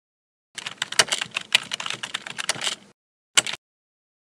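Rapid computer-keyboard typing clicks for about two and a half seconds, used as a sound effect, then a short burst of clicks near the end.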